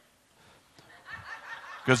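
Faint, soft laughter from people in the room, starting about a second in and fading as the preacher speaks again.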